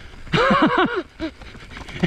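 A man's short laugh, a quick run of rising-and-falling syllables about a third of a second in, followed by the low rumble of mountain-bike tyres rolling over the dirt trail.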